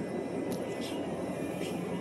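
Steady background noise of a shop interior, a hum of ventilation and room noise, with a few faint light clicks or rustles.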